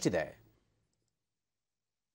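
A voice finishes a word in the first moment, then total silence: dead air with no room tone at all.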